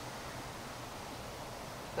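Quiet, steady outdoor background noise with no distinct events.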